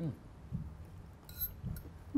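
Quiet eating sounds: an appreciative "mm", a couple of soft low hums, and a light clink of a metal fork on a plate about one and a half seconds in.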